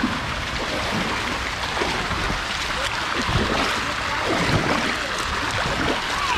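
Steady rushing and lapping of water on a lazy river, heard from a tube riding the current.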